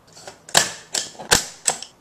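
Cardboard pizza boxes being handled and knocked together: four sharp knocks in about a second and a half, the third the loudest.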